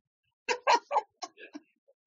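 A handful of short, quiet vocal sounds in quick succession, lasting about a second, much softer than the conversation around them.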